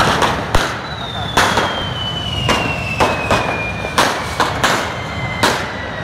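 Correfoc firecrackers and sparklers going off in a rapid, irregular string of sharp bangs, about ten in six seconds. A thin whistle slowly falls in pitch across most of the stretch.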